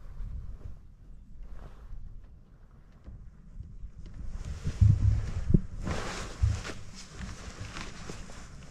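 Wind rumbling on the microphone, with rustling and a few dull thumps from about halfway through as the pilot shifts in the hang glider harness.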